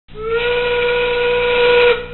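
Steam locomotive whistle, one long blast that slides up in pitch as it opens and then holds a single steady note.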